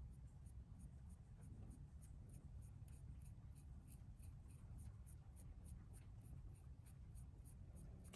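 Faint, quick scratching of a paintbrush's bristles dry-brushing paint over the raised letters of a small 3D print, about four light strokes a second, over a low steady hum.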